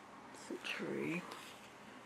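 A brief murmured vocal sound, under a second long, about halfway through.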